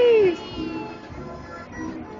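A loud, high-pitched squeal that falls in pitch and breaks off within the first half second, then carousel music plays on underneath.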